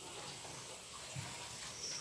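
Faint steady hiss of room tone in a pause between words, with one soft brief sound about a second in.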